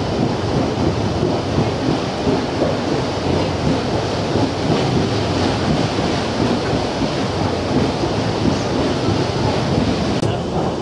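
Paddle steamer under way, its paddle wheels churning and splashing through the water in a steady, dense rumble.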